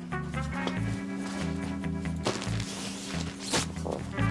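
Light background music with held notes, and a couple of brief rustles as pillows and bedding are handled, the clearest about three and a half seconds in.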